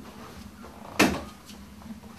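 An interior door knocking once, sharply and briefly, about a second in, as it is pushed open and someone walks through.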